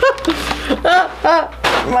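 A person's voice making wordless sounds of effort and frustration, with a short noisy burst near the end.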